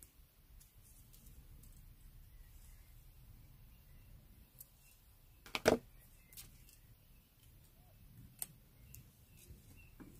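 Small metal jewellery pliers and copper wire being handled, with a few light clicks and one sharper double clack about halfway through as the pliers are put down on the table. A faint low hum lies under it all.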